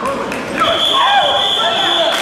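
Voices calling out in a sports hall, with one steady high-pitched tone that starts about two-thirds of a second in and holds.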